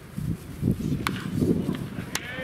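A baseball pitch smacks into the catcher's mitt with one sharp, ringing pop about halfway through, over an uneven low background rumble.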